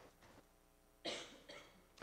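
Near silence, broken about a second in by a short cough and a fainter sound half a second later.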